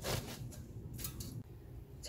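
A few faint, crisp rustles of salted young radish greens handled in a stainless steel bowl, mostly in the first second.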